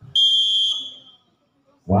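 Volleyball referee's whistle: one high, steady blast a little over half a second long, fading out, signalling the serve.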